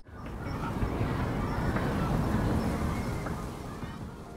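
Outdoor ambience: a steady low rumble and hiss. It fades in just after the start and tapers off near the end.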